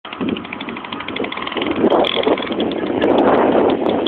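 Small red moped's engine running, a rapid even rattle of about ten beats a second over rough mechanical noise.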